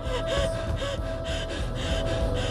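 A person breathing hard and fast, about two breaths a second, a couple of them with a short voiced catch, over a steady held tone from the film's score.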